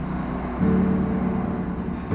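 Acoustic guitar being strummed: a chord rings and fades, then a new chord is struck a little over half a second in and rings on.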